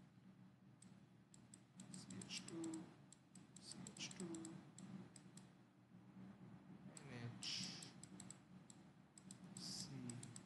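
Faint, irregular clicking and tapping of a stylus on a pen tablet while writing, with a few faint murmurs from the writer.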